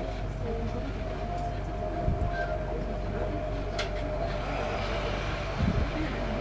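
Inside a train carriage standing still: a steady hum with a constant whine, broken by a low thump about two seconds in, a short click a couple of seconds later, and another thump near the end.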